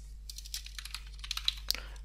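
Computer keyboard typing: a quick run of keystrokes starting about a quarter second in, as a word is typed into a code editor.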